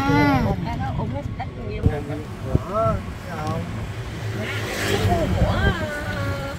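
Voices calling out over a steady low rumble of wind and road noise, heard from riding in an open-sided cart.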